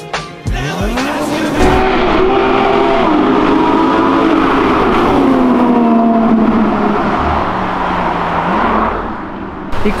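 Porsche sports car accelerating hard: the engine note climbs from about half a second in, rising again after a few gear changes. It then falls away in pitch and holds a steadier tone before fading near the end.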